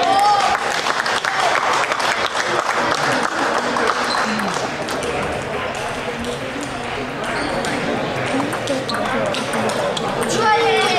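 Large-hall ambience during table tennis: scattered sharp clicks of table tennis balls on bats and tables from the surrounding tables, over a steady background of many voices. A voice calls out briefly at the very start.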